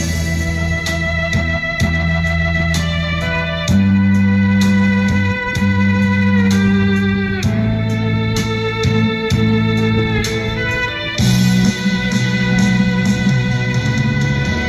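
Instrumental interlude of a song's accompaniment, with sustained melody notes over a steady bass line and no voice.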